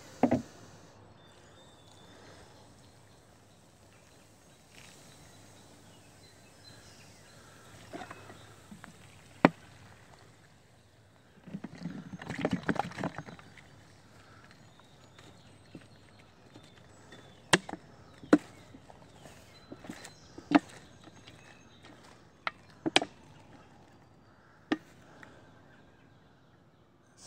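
Several short, sharp clicks and knocks scattered over a faint background hiss, the loudest right at the start and a cluster of them in the last third, with a longer rustle about halfway through.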